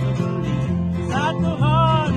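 Country song played on two strummed acoustic guitars and an electric bass, with a man's singing voice coming in on a new line about a second in.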